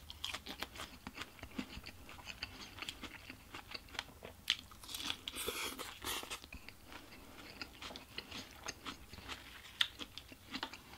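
Close-miked mouth sounds of someone biting and chewing a lettuce-wrapped burger: many small crisp crunches and wet clicks, with a longer rustling stretch around the middle.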